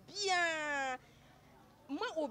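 A single drawn-out vocal call about a second long, its pitch rising briefly and then gliding steadily down, followed by a short lull.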